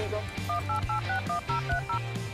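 Telephone keypad tones as a number is dialed: about eight quick two-tone beeps in a row, starting about half a second in. Background music with a steady drum beat plays underneath.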